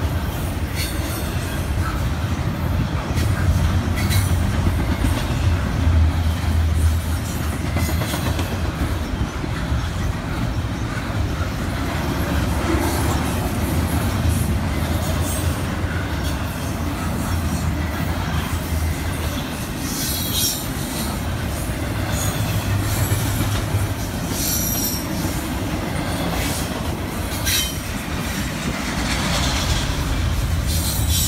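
A CN double-stack intermodal freight train rolling past close by: a steady low rumble of the well cars' wheels on the rails. Short high squeals from the wheels come a few times in the second half.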